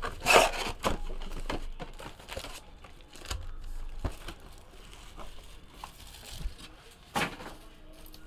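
Foil-wrapped trading-card packs and their cardboard box being handled: scattered rustles and light taps as the packs are pulled out and stacked, with louder rustles right at the start and about seven seconds in.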